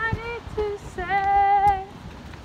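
A woman singing without accompaniment: a short sung phrase, then a long held note from about a second in, with a slight vibrato.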